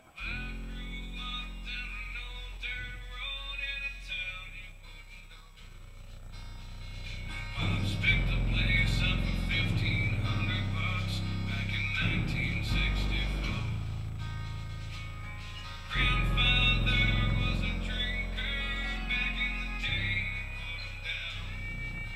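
Music played through an unboxed Massive Audio Hippo XL64 six-inch-class subwoofer, its cone pumping to bass notes that step up and down; the music gets louder about eight seconds in and again about sixteen seconds in.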